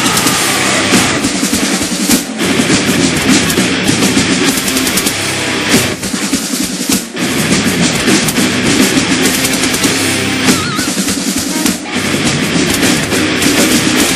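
Live heavy metal band playing an instrumental section without vocals, loud and dense, led by heavy drum-kit drumming. A percussionist plays a marching snare drum in it.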